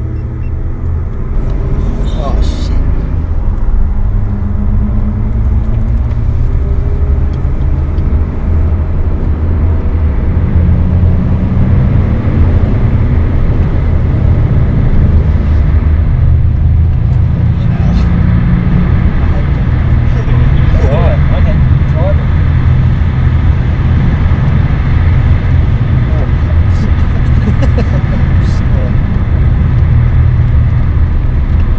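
In-cabin sound of a BMW 530d's straight-six diesel pulling the car up to speed, a loud, low engine drone that builds over the first several seconds and shifts in pitch, with road and tyre noise underneath.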